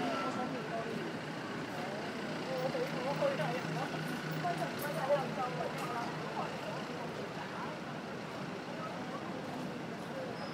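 Outdoor street ambience: several voices talking indistinctly in the background, with a steady low engine hum from a vehicle through the middle.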